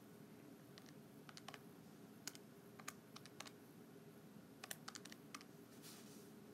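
Faint, irregular clicking of keys being pressed one at a time on a calculator, a dozen or so presses at uneven intervals over a low steady room hum.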